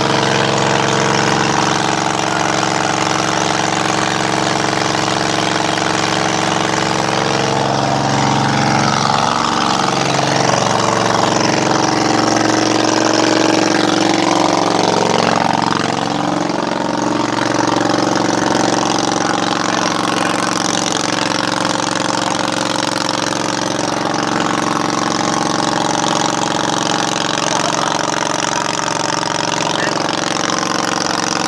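A water tanker truck's engine running steadily, its pitch wavering up and down for several seconds around the middle, over a steady hiss.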